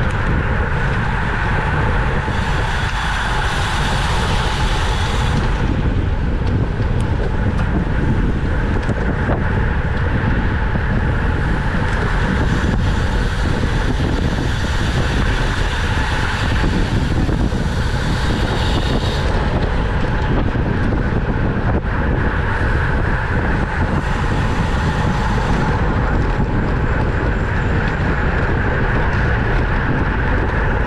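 Wind rushing over the microphone of a bicycle-mounted action camera at racing speed, with steady road and tyre rumble. A higher buzz comes and goes three times.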